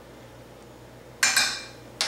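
A metal kitchen utensil clinks once against metal cookware a little past a second in, with a short high ringing that dies away quickly.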